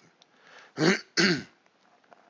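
A man clearing his throat twice, two short bursts about half a second apart.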